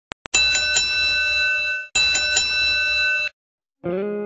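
Electronic bell-like chime sound effect of an intro logo: two short clicks, then two sustained ringing tones of about a second and a half each, with a few brighter strikes within each tone. Music starts just before the end.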